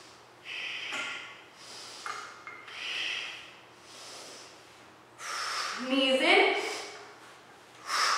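A woman breathing hard through a strenuous arm-balance inversion: a series of loud breaths in and out, roughly one every second or so, with a short voiced breath about six seconds in.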